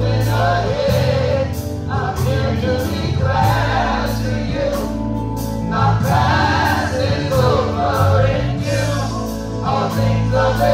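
Live gospel singing by a small group of singers on microphones, a woman out front leading, over sustained bass notes and a steady beat of about two clicks a second.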